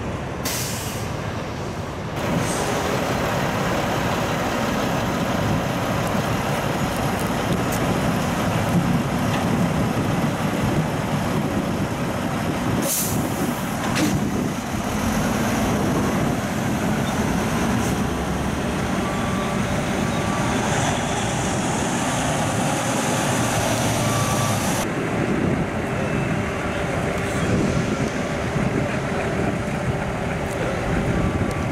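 Diesel semi-trucks hauling shipping containers run close by, a loud steady engine noise. Sharp air-brake hisses come near the start and twice near the middle, and a faint intermittent beeping comes in during the second half.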